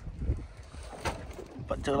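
Low wind and water noise from a small wooden boat at sea, with a faint knock about a second in; a man's voice starts up near the end.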